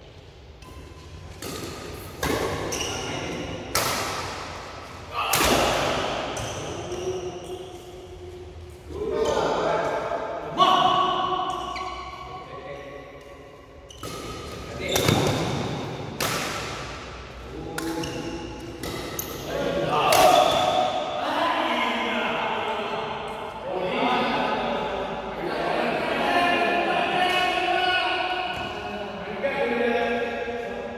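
Badminton rally: sharp racquet strikes on the shuttlecock every second or two, each ringing on in the echo of a large indoor hall.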